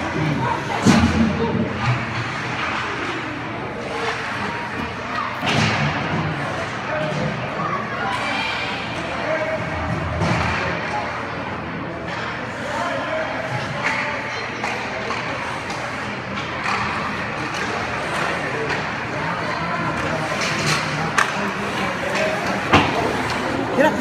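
Ice hockey game in an echoing rink: a steady din of spectators' voices and skates on ice, broken by a handful of sharp knocks of puck and sticks against the boards, the loudest about a second in and near the end.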